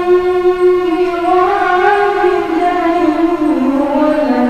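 A boy chanting solo, holding one long melodic note that wavers slowly in pitch and sinks toward the end.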